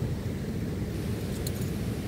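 Wind buffeting the microphone outdoors: a steady low rumble with a couple of faint ticks about one and a half seconds in.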